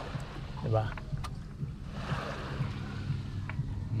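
Shallow seawater sloshing against the hull and outrigger of a paraw sailing boat, with a steady low rumble of wind on the microphone, a swell of splashing a couple of seconds in and a couple of small knocks.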